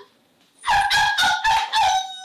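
A woman making loud, high-pitched rooster-like crowing calls in about five quick bursts, starting about half a second in.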